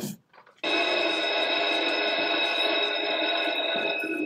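A steady tone made of several pitches sounding together, starting abruptly about half a second in and holding at an even level for over three seconds.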